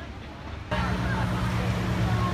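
Outdoor background noise with faint distant voices; about two-thirds of a second in, at a cut, the sound jumps louder to a steady, unchanging low hum.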